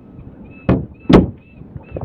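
A deck hatch lid beside the anchor windlass being lowered and shut: two thumps about half a second apart, the second louder.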